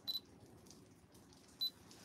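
Two short, faint high-pitched clicks, alike and about a second and a half apart, over quiet room tone.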